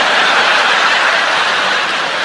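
Live theatre audience laughing and applauding together in a dense, steady wash that fades out just as the comedian starts speaking again.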